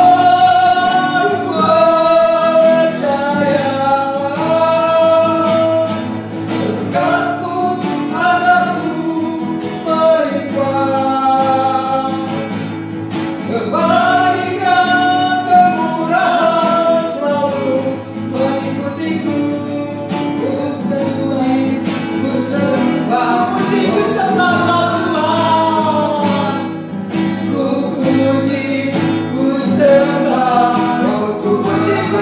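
A woman and a man singing a worship song together, with long held notes, to a strummed acoustic guitar.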